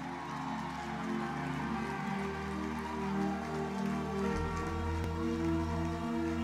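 Soft live church music: sustained held chords that shift slowly, with a deeper bass note coming in about four seconds in.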